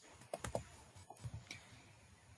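Faint keystrokes on a computer keyboard: a few light key clicks in two short runs, one just after the start and another about a second in.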